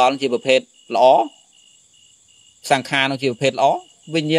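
A man preaching in Khmer, pausing for about a second and a half in the middle. A faint, steady high-pitched tone runs underneath throughout.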